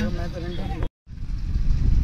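Low, uneven rumble of wind buffeting the microphone, with faint voices under it. The sound drops out completely for a moment just under a second in, at an edit cut, then the rumble returns.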